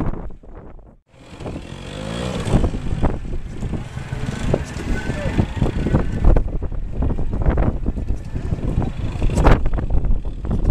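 Vintage trials motorcycle engine revving and blipping at low speed, its pitch rising and falling as the bike is worked over an earth bank. The sound nearly drops out about a second in, and voices chatter over the engine.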